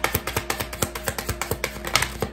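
A deck of tarot cards being shuffled by hand: a quick, continuous run of light card clicks and slaps, roughly ten a second.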